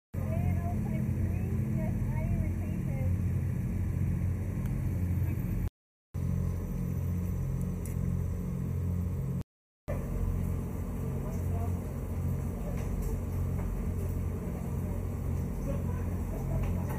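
A steady low rumble with faint, indistinct voices over it. The sound cuts out completely for a moment twice, about six and nine and a half seconds in.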